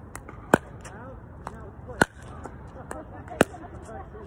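Sharp pocks of a pickleball paddle hitting a plastic pickleball, with the ball bouncing on the hard court: three loud strikes about a second and a half apart and a few fainter taps between.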